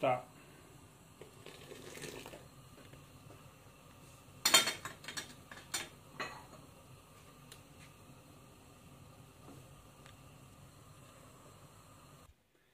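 Metal ladle knocking and clinking against an aluminium cooking pot: a quick run of sharp metallic knocks about four and a half to six seconds in, with faint hiss around them.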